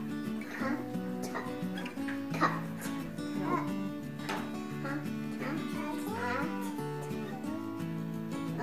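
Background music with steady held notes that change every half second or so. A voice is heard faintly over it at times.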